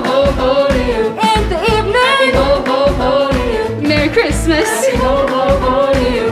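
Upbeat song with a steady beat and singing voices: a band or backing track with a group of young singers.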